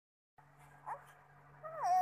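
Baby's short whiny vocalization: a brief squeak about a second in, then a longer fussy whimper whose pitch rises and then falls near the end, over a faint steady low hum.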